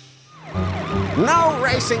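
Cartoon soundtrack: after a brief quiet dip, background music comes back in along with a wailing police car siren, and a man's voice starts to shout near the end.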